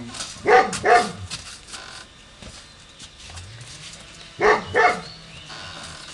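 A dog barking: two quick barks about half a second in, then another two about four and a half seconds in.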